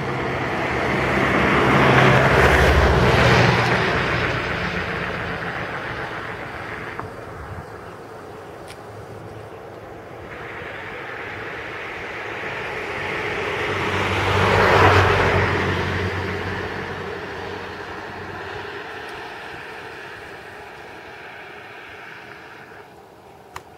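Two motor vehicles passing by on the road, one after the other: each engine and its tyre noise grows louder, peaks and fades away, the first about two to three seconds in and the second about fifteen seconds in.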